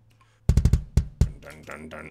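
Sampled drum-kit sounds from a drum plugin playing back: about half a second in, a quick run of sharp drum hits like a fill, then a few more single hits.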